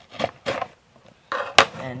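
Metal hobby knife slicing through a sticker seal on a cardboard box in two short scrapes, then a rustle of the cardboard box being handled with a sharp click near the end.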